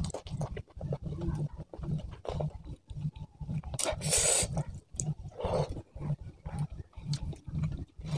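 Close-miked chewing of rice and curry, with low thumps about twice a second and wet mouth clicks and smacks. A loud breathy rush comes about four seconds in.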